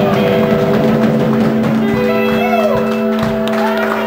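Live rockabilly band holding the final chord of a song: guitar notes sustained steadily over drum hits, with a few voices shouting over it.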